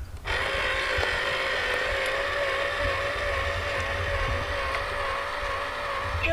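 Small electric motor of a toy robot money box drawing a banknote in through its slot, running with a steady, slightly wavering whine that starts a moment in.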